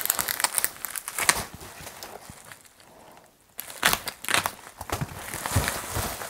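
Plastic bubble wrap crinkling and crackling as a packed product is unwrapped by hand, with a pause of about a second in the middle.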